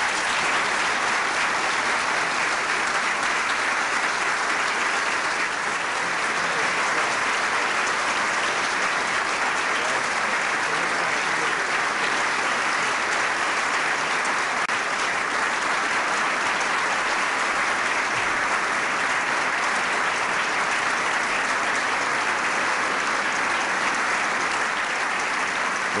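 Large audience applauding, steady and unbroken.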